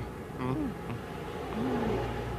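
A steady buzzing whoosh, the sound effect of a character taking off and flying through the sky, with two brief voice sounds, about half a second in and near the end.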